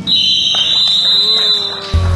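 Basketball scoreboard buzzer sounding one steady, high-pitched tone for nearly two seconds.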